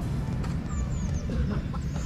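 Birds calling: a few short high chirps about half a second in and some fainter falling calls, over a steady low rumble.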